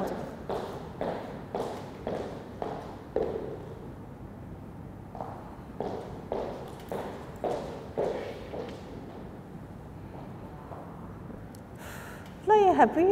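A model's catwalk footsteps on a wooden studio floor, about two steps a second. There is a pause of about two seconds near the middle as she turns, then the steps start again and fade out over the last few seconds.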